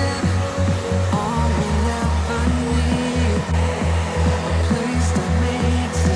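Handheld hair dryer blowing steadily during blow-drying, under background pop music with a steady bass beat.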